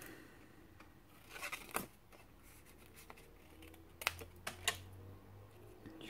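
Scissors cutting thin pink cardstock: a few short snips about one and a half seconds in, and a few more around four seconds in.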